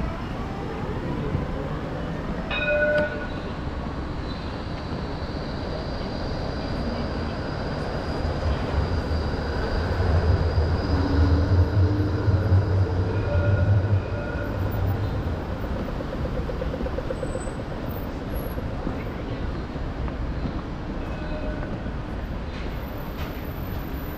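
City street traffic with a tram rumbling past: a low rumble builds and peaks from about eight to fourteen seconds in, under a faint steady high whine. A brief pitched beep sounds about three seconds in.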